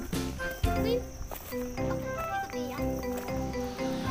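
Background music: a melody of short held notes over a steady, regular beat.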